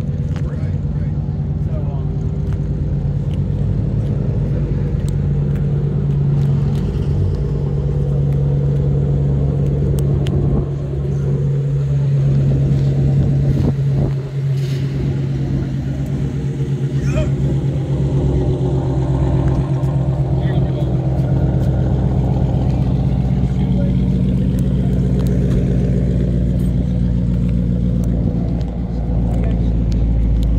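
A car engine idling steadily, a low even drone that holds its pitch throughout.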